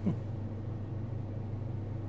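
A steady low machine hum with a faint hiss underneath. A brief vocal sound comes right at the start.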